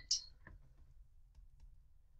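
Faint, scattered clicks of a stylus tapping on a tablet as handwriting is written, over a low hum.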